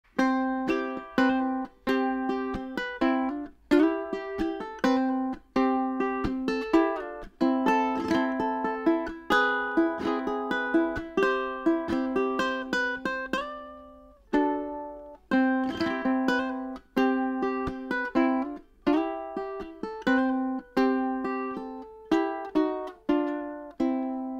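Snail SUT-M1 tenor ukulele with a solid mahogany top, played solo: a run of plucked and strummed chords with quick decays, one chord left to ring out about halfway through before the playing picks up again.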